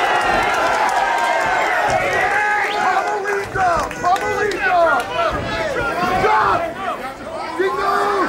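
A crowd of fight spectators shouting and calling out over one another, several voices at once.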